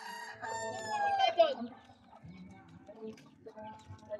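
A rooster crowing once: a long call held on one pitch that falls away and ends about a second and a half in, followed by fainter scattered chicken sounds.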